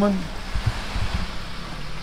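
Steady hiss of rain and wet pavement, with a low rumble as a 2002 Honda CR-V pulls away.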